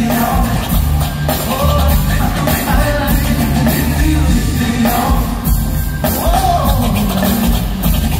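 Live R&B vocal group singing over an amplified band with heavy bass and drums, loud and steady throughout.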